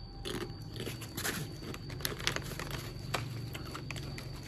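Crunchy bim bim snack chips being bitten and chewed close to the microphone: a run of sharp, irregular crunches.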